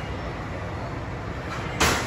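Underground subway platform ambience: a steady low rumble with hiss. Near the end comes one short, sharp burst of noise.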